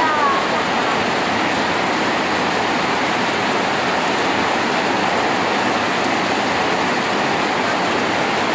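A steady, even rushing noise that holds at one level throughout, with no rhythm.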